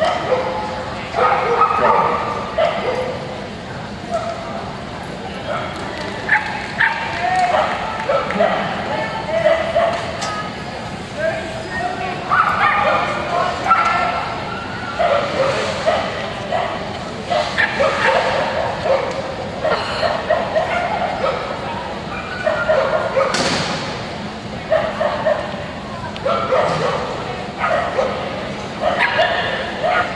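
Dogs barking and yipping repeatedly, with background voices.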